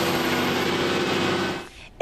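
City transit bus engine running steadily, a low hum under a broad hiss, which cuts off abruptly near the end.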